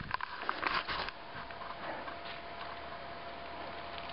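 Handling noise of a handheld camera being swung around: a few knocks and rustles in the first second. After that comes a quiet, steady outdoor hiss with a faint, even hum.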